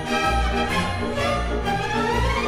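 Theatre orchestra playing an instrumental passage of an operetta number, with violins to the fore over repeated low bass notes.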